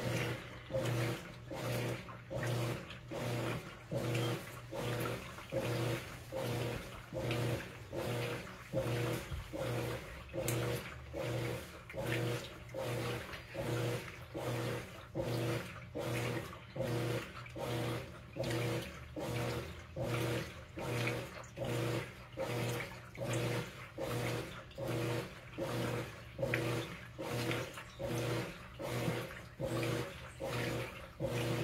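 Whirlpool WTW4816 top-load washer agitating a load in water during its wash cycle. The motor hums and the water sloshes in even strokes, a little more than one a second.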